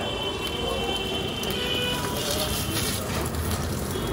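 Eggs frying on a large flat iron griddle, a steady sizzle under busy street noise and background voices, with a few clicks of a metal spatula on the griddle near the end.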